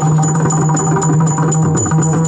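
Yakshagana instrumental music with no singing: a maddale barrel drum played in quick rhythmic strokes, with the bhagavata's tala hand cymbals keeping time over a steady low held tone.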